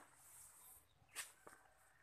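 Near silence, with a few faint clicks: one at the start, a sharper one just over a second in and a smaller one shortly after.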